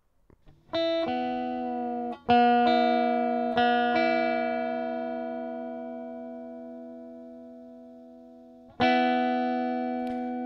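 Electric guitar on a clean amp tone: strings struck together are left to ring and slowly fade. They are struck at about one second, again about two seconds in, and once more near the end. A faint wobble of beating between the notes is heard, the cue for tuning the strings by ear.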